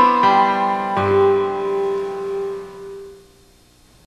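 Synclavier sampling synthesizer playing a layered patch of a sampled Steinway grand piano and a sampled wine glass. A last chord is struck about a second in, then held and left to fade away over the next two seconds.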